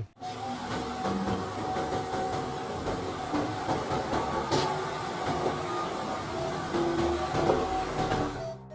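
A MAN concrete mixer truck's diesel engine running steadily as the truck moves slowly along the street, with a brief hiss about halfway through.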